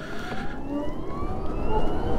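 BMW CE 04 electric scooter's electric drivetrain whining under acceleration, its pitch rising steadily as the scooter picks up speed from about 8 to 21 mph.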